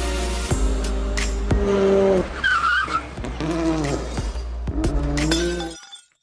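Channel logo sting made of sound effects and music: a loud steady low rumble under several sharp whooshing hits and bending pitched tones, with a high wavering tone about midway. It cuts off abruptly near the end.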